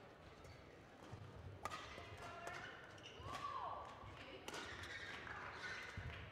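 Badminton rally: sharp racket strikes on the shuttlecock, loudest about a second and a half and four and a half seconds in, with lighter hits between. Footfalls thud on the court floor, and a shoe squeaks about three seconds in.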